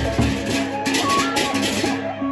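Sasak gendang beleq ensemble playing a kreasi piece: large barrel drums struck with sticks, ceng-ceng hand cymbals clashing, and small kettle gongs ringing a melody over held gong tones. Heavy drum strokes stand out near the start.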